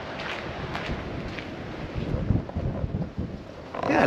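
Wind buffeting the camera microphone, a rough noisy rush with uneven low rumbles.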